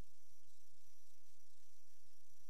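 Steady electrical hum and hiss with a faint high whine, unchanging throughout: the idle noise of a sewer inspection camera system while it records.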